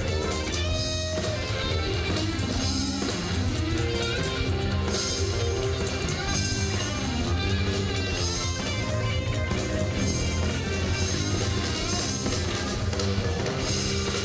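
Live blues band playing an instrumental passage, guitars to the fore over bass and drums.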